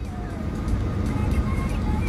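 Low rumble of a car, heard from inside the cabin, growing slightly louder, with faint music underneath.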